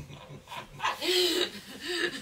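A person's voice making short wordless sounds: a brief exclamation about half a second in, then a held, breathy note. Near the end it breaks into rhythmic, laugh-like pulses at about four a second.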